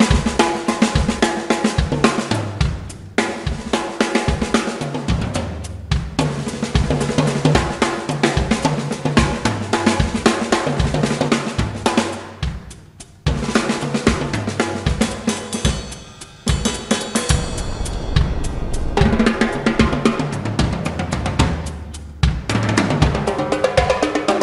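Drum solo on a large acoustic drum kit: bass drum, snare and toms played in dense, fast patterns under cymbals, with a few brief breaks.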